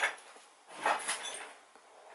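Loose papers and plastic bags rustling as they are handled, in a short burst about a second in.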